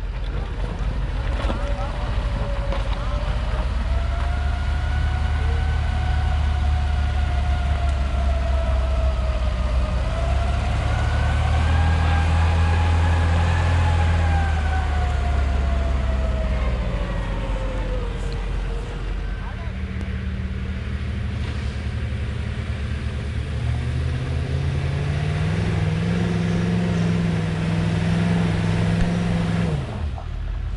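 Off-road vehicle engines running slowly on a rough dirt track. Through the first half, the engine drone is joined by a whine that rises and falls in pitch with the vehicle's speed, typical of a Steyr-Puch Pinzgauer 6x6 drivetrain, and it fades out after about 18 seconds. Toward the end a deeper, steadier engine note takes over as a Humvee climbs.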